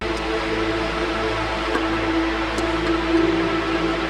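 Arturia Pigments 5 softsynth playing a held, dense sound made from sidechained audio input, run through filter, delay, reverb and Super Unison effects. It starts suddenly, holds steady on one pitch for about four seconds, and stops near the end.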